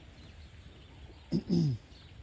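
A short, low call from one of the feedlot cattle, about one and a half seconds in: a brief rise, then a falling moo lasting under half a second.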